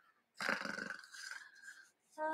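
Faint stifled laughter: a breathy snort through the nose, starting about half a second in and tailing off well before the end.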